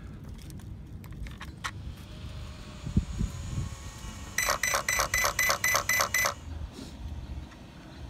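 Hobbywing Max 6 brushless speed controller powering up in a Traxxas X-Maxx, sounding its start-up beeps through the motor: a quick, even run of short high beeps, about five a second, lasting about two seconds just past halfway through. Before that, a few light clicks as the power switch is handled.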